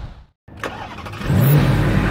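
A brief gap of silence, then a car engine revving up about a second in, its pitch rising and then holding.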